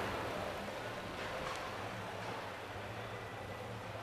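Steady background ambience of a large exhibition hall: a low hum under an even wash of distant noise, with no distinct events.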